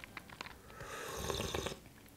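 A person slurping ice water off a spoon: one airy, drawn-in sip lasting about a second, with a few small clicks of spoon and ice just before it.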